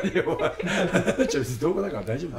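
Men talking and chuckling, laughter mixed into their speech.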